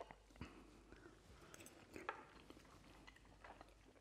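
Near silence, with faint scattered mouth clicks of a person chewing a mouthful of food.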